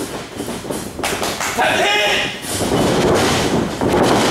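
Thuds from wrestlers on a wrestling ring's mat, with a shouted voice in the middle and loud, noisy sound building near the end.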